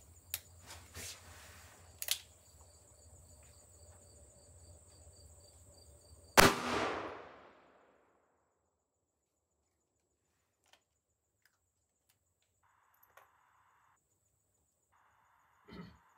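A .357 Magnum Ruger GP100 revolver with a 5-inch barrel fires once, about six seconds in: a single sharp shot followed by a short echo that dies away. A few small clicks come before it as the revolver is handled.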